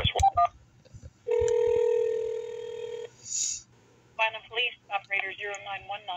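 A telephone line heard through a phone's speaker: a few clicks, then a single steady ringing tone of about two seconds, then a voice on the line near the end.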